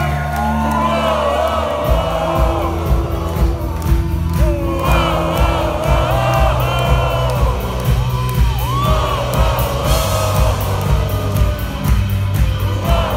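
Loud live rock music heard from within the audience: a full band with a male voice singing. Sustained bass notes give way to a steady drum beat about two seconds in, with crowd voices mixed in.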